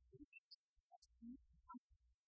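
Very faint, broken-up music: a man singing into a handheld microphone, the sound coming through only in scattered fragments.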